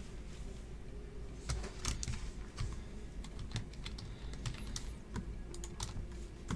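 Typing on a computer keyboard: irregular keystrokes, with a few louder clicks about one and a half to two seconds in.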